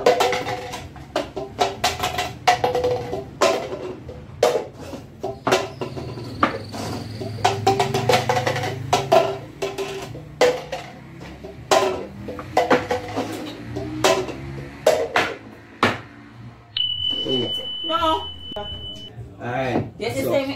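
Red plastic party cups knocking and clattering on a wooden tabletop as they are tapped and flipped, many quick irregular knocks, over background music with a voice. A short steady high beep sounds for about two seconds near the end.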